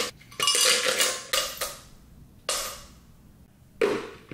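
Ice cubes dropped by hand into a blender jar, clinking and clattering in several bursts, then the jar's lid pressed on near the end.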